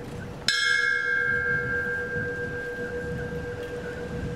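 A bell struck once about half a second in, its tone ringing on and slowly fading. It is a memorial toll, sounded in the pause after each victim's name is read.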